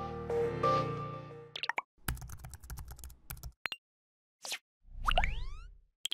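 Background music fading out over the first second and a half, followed by a logo sound sting: a quick run of clicks, a short swish, and a burst of rising tones near the end.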